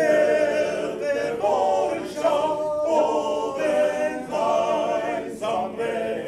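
A small male choir singing a cappella in close harmony, a German part-song for men's voices, in phrases with short breaks between them.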